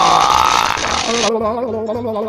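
Cartoon electric-shock sound effect: a loud crackling, buzzing zap for about the first second that cuts off sharply, followed by a warbling, trembling tone.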